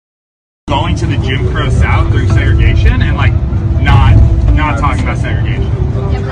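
A brief gap of silence, then a man talking inside a bus over the steady low rumble of the moving coach's engine and road noise.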